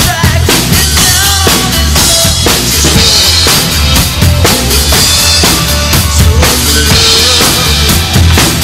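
Pearl drum kit played in a steady rock beat, with bass drum, snare and cymbals, over a recording of the song with its pitched instruments and voice.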